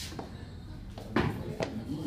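A one-arm long cycle rep with a 12 kg kettlebell: two short, sharp sounds about a second in and half a second later as the bell is swung and cleaned back into the rack, landing against the forearm, with the lifter's forceful breathing.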